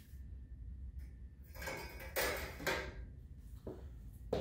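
Quiet handling noises: a few short scrapes and knocks, bunched in the middle, as a metal bar is moved on the rails of a stainless-steel dip tank. A steady low hum runs underneath.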